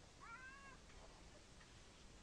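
Near silence, with one faint animal call about a quarter second in, lasting about half a second and rising slightly at its start.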